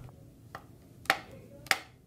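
A film clapperboard's hinged clapstick snapping shut: two sharp clacks a little over half a second apart, after a faint click.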